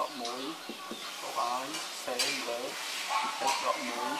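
Marker scratching across a board in short strokes while an equation is written, the sharpest stroke about halfway through, over faint background voices.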